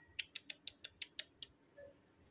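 A quick run of sharp clicks, about six a second, lasting about a second.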